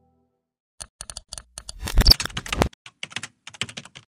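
Rapid clicks of typing on a computer keyboard, starting about a second in, densest and loudest around the middle, then thinning to sparser runs near the end.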